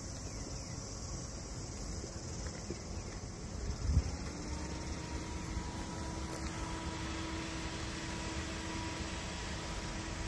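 Steady chirring of insects in the surrounding trees over low rumbling outdoor noise. A single low thump about four seconds in, after which a steady hum sets in and holds.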